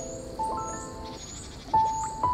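Slow, gentle piano music with held notes: a new note sounds a little way in and another near the end. Under it runs a nature-sound layer of high chirps repeating about twice a second.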